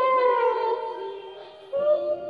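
A young child singing drawn-out notes into a toy microphone. A note slides down at the start, the sound thins for a moment, and a new note begins near the end.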